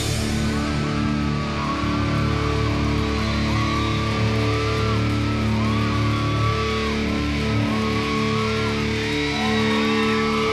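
Rock band playing live: distorted electric guitars and bass hold sustained chords, with a wavering higher guitar line over them.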